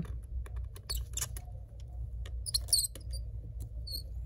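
Precision screwdriver squeaking and clicking as it turns out small laptop screws, with short high-pitched squeaks about two and a half seconds in and again at the end. The noise comes from the screwdriver itself, which is due for replacement.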